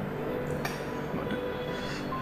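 Drama background score of held, sustained synthesizer-like chords, shifting pitch a couple of times.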